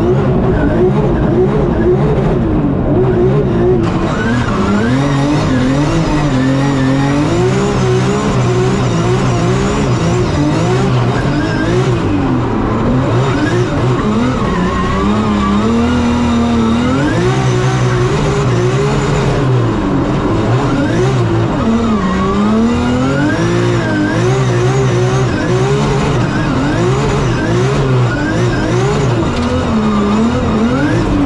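A 900 bhp BMW M3 drift car's engine heard from inside the cabin during a drift run. The revs rise and fall constantly as the throttle is worked through the slides, with tyre squeal underneath.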